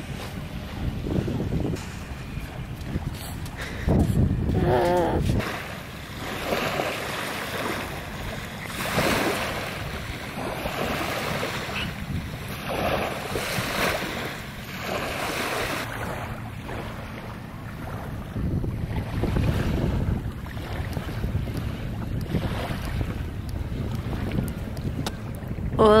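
Wind buffeting the microphone over small waves lapping on a sandy shore, rising and falling in gusts.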